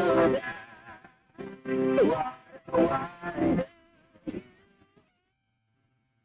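A woman's voice singing a slow worship song solo, in drawn-out phrases with wavering held notes. It dies away about five seconds in.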